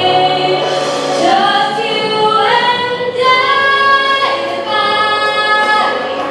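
Female voice singing long held notes that slide from one pitch to the next, amplified through a handheld microphone.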